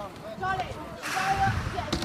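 Kick scooter's small wheels rolling fast over asphalt: a rushing hiss with a low rumble through the second half, ending in a short click.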